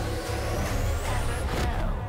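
Music-video soundtrack at a transition: a hissing wash with a thin rising whine climbing over about a second and a half, over deep bass, cutting off abruptly at the end.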